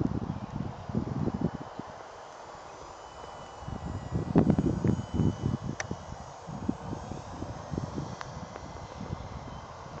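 Gusty wind buffeting a phone microphone in irregular low rumbles, heaviest about four to five seconds in. Under it, a faint thin steady whine comes from the distant electric motor of a scale RC plane in flight.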